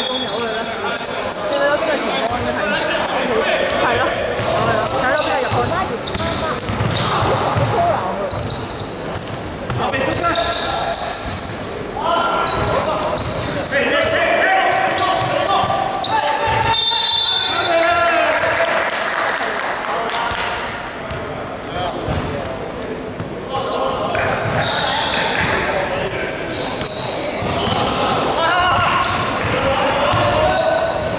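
Basketball game on an indoor hardwood court: the ball bouncing, many short high-pitched sneaker squeaks on the floor, and players calling out, all echoing in a large hall.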